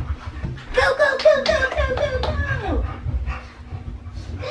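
A dog whining excitedly in a string of short rising-and-falling cries lasting about two seconds, as it is called to go out to potty.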